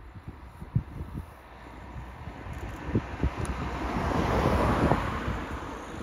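A formation of three C-130 Hercules four-engined turboprop transports approaching low overhead. Their engine drone builds to a peak about four to five seconds in, then eases. Wind buffets the microphone throughout.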